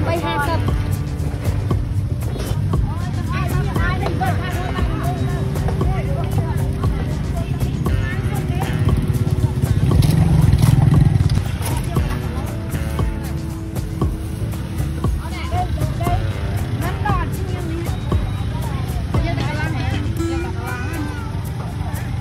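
Busy market ambience: overlapping indistinct voices of people nearby, a steady low rumble of passing vehicles that swells about ten seconds in, and music playing.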